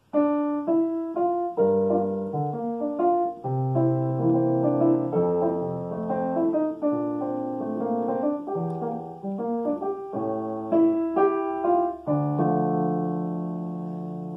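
Digital piano playing a jazz demonstration: the right hand plays the melody harmonized in chords while the left hand moves underneath with bass notes and arpeggios. It ends on a long held chord.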